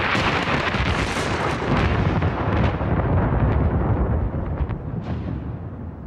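A long peal of thunder: a steady low rumble with a few sharp crackles through it, its upper hiss slowly dying away.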